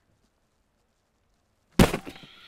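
Near silence, then near the end one heavy blow: the mild-steel head of a reproduction sword-axe striking the steel plates of a brigandine sample on a wooden target board. A sharp crack is followed by a brief metallic ring.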